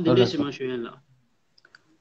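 A man speaking for about a second, then near silence broken by a few faint clicks.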